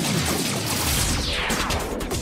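Radio station jingle music with a production sweep effect that slides down in pitch from about a second in.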